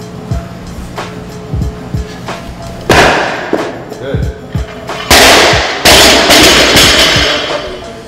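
Loaded barbell with rubber bumper plates. There is a sudden loud clank with a rattling tail about three seconds in, then the bar is dropped from overhead about five seconds in: the plates crash onto the floor, hit again about a second later, and clatter as they settle.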